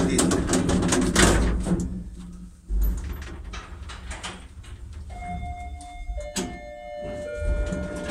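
ShchLZ elevator car running with a steady low hum and a thump a little before 3 s. From about 5 s its floor-arrival signal sounds: an electronic chime of several overlapping steady tones at different pitches, with a sharp click partway through.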